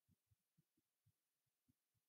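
Near silence between narrated lines.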